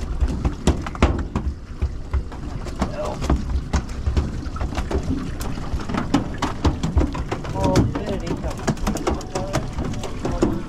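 Small aluminium boat drifting on open water: irregular knocks and light slaps of water against the hull and gear handled on deck, over a low rumble.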